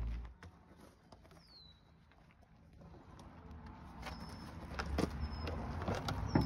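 Quiet outdoor background, almost silent at first, with a bird's falling whistle and a couple of short high chirps. A few light clicks and knocks come near the end.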